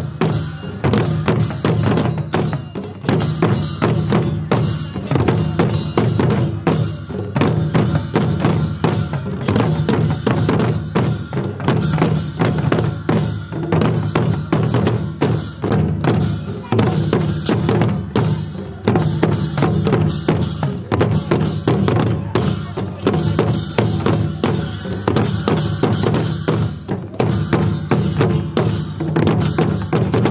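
A row of large bowl-shaped drums beaten with sticks in a fast, steady, unbroken rhythm, many strokes a second, for a traditional Dhami dance.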